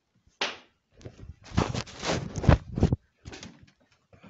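A sharp knock about half a second in, then about a second and a half of quick knocks and rustling handling noise, and a few fainter knocks near the end, in a small room.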